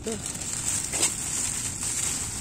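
Thin clear plastic fruit bag crinkling and rustling as it is handled, with one sharper crackle about a second in.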